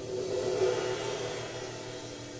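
Jazz piano trio playing a slow ballad: a cymbal swells up and fades away over held piano and double-bass notes.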